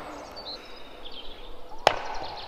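Outdoor ambience: a steady faint hiss with a few faint high chirps. A single sharp click near the end, where the recording is cut.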